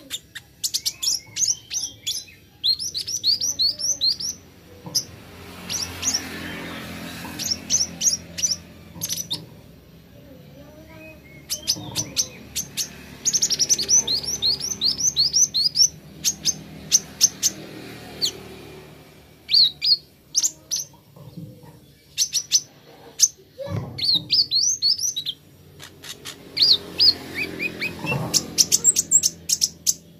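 Male Van Hasselt's sunbird (kolibri ninja) singing: quick runs of high, thin chirps in bursts of a few seconds, with short pauses between bursts.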